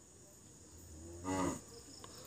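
Low room noise, then a little past a second in, one brief hummed 'mm' from a person's voice.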